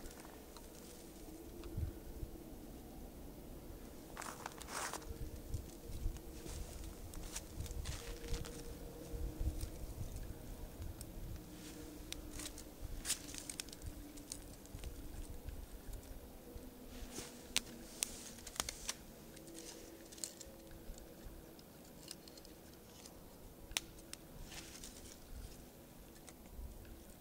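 Rustling and crinkling of dry tinder and thin kindling sticks being handled and stacked on a fire lay, with scattered light clicks and snaps.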